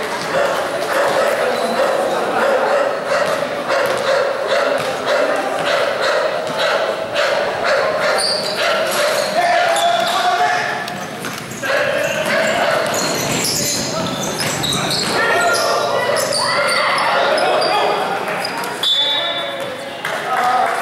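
A basketball bouncing again and again on a hard painted court during play, with spectators and players chattering and shouting, echoing in a large hall.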